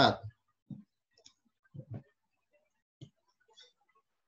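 A few faint, separate clicks spread over a few seconds, typical of a computer mouse clicking through a slide presentation.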